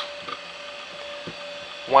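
A Macintosh floppy drive reading a freshly inserted disk: a faint, steady whine with a couple of soft ticks.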